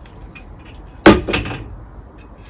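A sharp knock about a second in, followed closely by a smaller one with a brief ring: a length of aluminium angle being knocked against something while it is handled.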